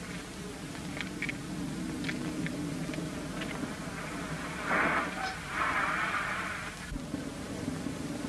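A motor vehicle engine droning steadily, with a loud rushing hiss in two bursts between about five and seven seconds in.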